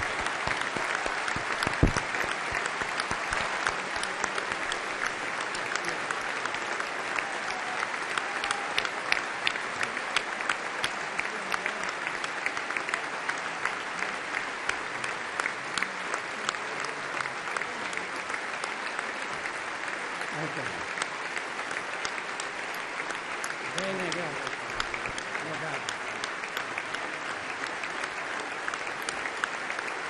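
Long ovation from a packed parliamentary chamber: dense, steady applause from hundreds of people clapping at once, with a few voices audible through it.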